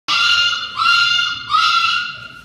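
A dog's high-pitched whining cries, three long ones in a row.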